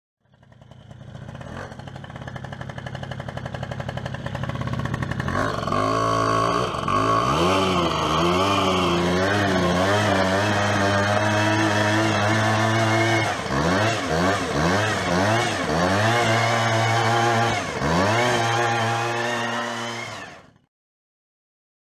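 A 100cc two-stroke moped engine running, growing louder over the first few seconds, then from about five seconds in revved up and down again and again in blips, before fading out at the end.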